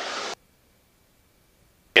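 Faint hiss from an open aircraft headset intercom that cuts off about a third of a second in, leaving dead silence: the voice-activated intercom feed has closed, and no engine noise comes through.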